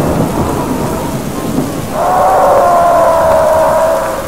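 Rain and thunder sound effect: a steady hiss of heavy rain with low rumbling. About halfway through, a long held tone joins in and falls slightly in pitch.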